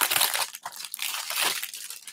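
Cellophane wrap being torn and crinkled off a boxed perfume, a dense run of crackles that thins out near the end.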